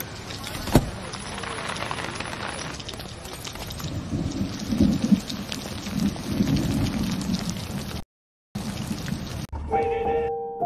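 Steady heavy rain pouring onto a street and umbrellas, with one sharp crack about a second in.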